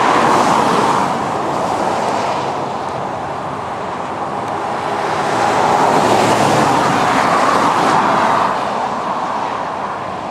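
Road traffic noise: the tyre-and-engine rush of vehicles on a nearby road, one fading away at the start and another swelling up and passing about six seconds in.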